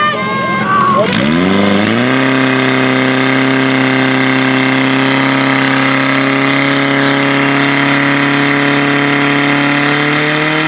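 Portable fire pump engine running hard under load as it pushes water through the hoses to the jets. About a second in its pitch climbs quickly, then holds high and steady, rising slightly near the end. Shouting is heard over the first second.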